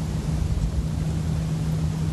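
A steady low droning rumble with a constant hum, like a distant engine.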